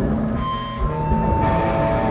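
Amplified punk band on stage between songs: held electric guitar tones over a steady amplifier hum.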